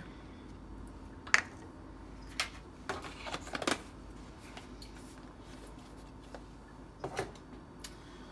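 A few light clicks and taps of plastic kitchenware being handled and set down, the sharpest about a second in, a quick run of them around three seconds, and two more near the end, over a faint steady hum.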